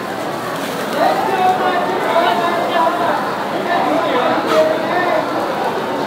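People talking in a busy food hall: a continuous mix of overlapping voices and chatter.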